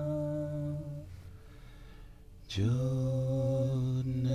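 A deep voice chanting a long held tone that stops about a second in; after a short pause a new held tone begins about two and a half seconds in, sliding up slightly onto its pitch and holding steady.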